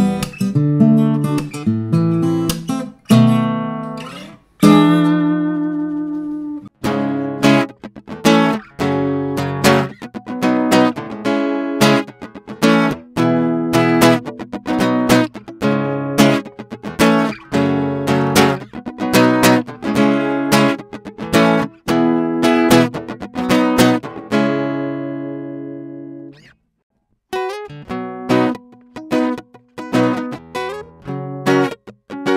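Kepma ES36e compact travel-size acoustic guitar played solo, strummed and picked chords in a steady rhythm. Near the end one chord is left to ring and fade out, followed by a brief pause before playing starts again.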